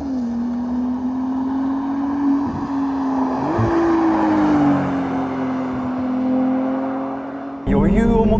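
Ferrari 296 GTS's 3.0-litre twin-turbo V6 hybrid driving past with a steady engine note that rises briefly about three and a half seconds in, while tyre and road noise swell as the car goes by. Just before the end the sound switches abruptly to a louder, lower engine drone heard from inside the open-top cabin.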